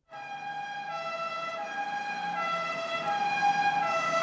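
Two-tone emergency vehicle siren alternating between a high and a low pitch roughly every three-quarters of a second, cutting in suddenly and growing louder.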